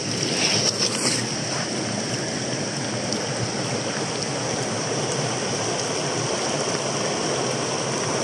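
Steady rush of a rocky mountain stream running over small cascades, with a few brief splashes in the first second.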